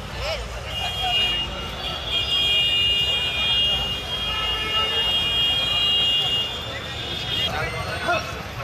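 Busy street outside a cinema: a steady traffic rumble with voices, and a long steady high-pitched tone of several pitches held together from just under a second in until near the end.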